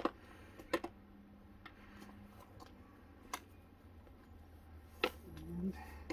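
Vinyl gutter end cap being forced by hand onto the end of a vinyl gutter section, a tight fit: a few sparse, light plastic clicks and taps as it is worked around the rim.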